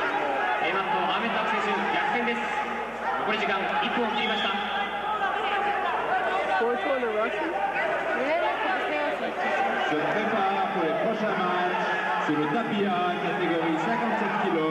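Overlapping, indistinct voices of people talking in a large arena hall, a steady murmur of chatter with no single clear speaker.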